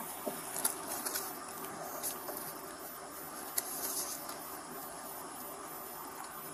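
Steady low background noise at a roadside at night, picked up by a police body camera, with a few faint clicks.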